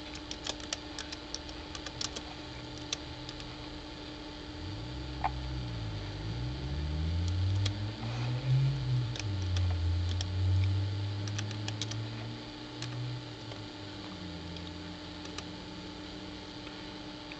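Computer keyboard keys clicking as a word is typed, in short runs early on and again in the middle. Underneath, a steady electrical hum, and from about four seconds in a louder low rumble whose pitch glides up and down before fading near the end.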